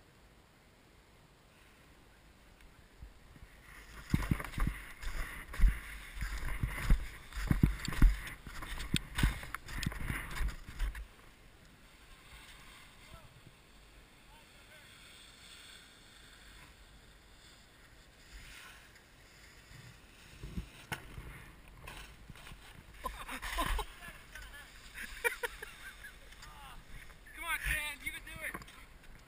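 Skis scraping and chattering over packed snow, picked up by a ski-mounted action camera, starting about four seconds in as the skier sets off, with rumbling gusts on the microphone. The scraping is loudest in the first stretch, eases off while gliding, and comes back in a second run later; a short voice is heard near the end.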